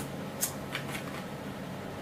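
Light handling noise of packaging as items are picked up and set down: a few soft rustles and small clicks.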